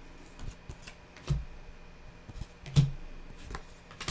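Tarot cards being dealt and laid down one by one on a wooden table: a handful of short taps and slaps as each card lands, the loudest near three seconds in.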